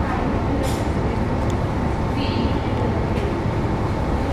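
Steady low rumbling background noise, with faint voices.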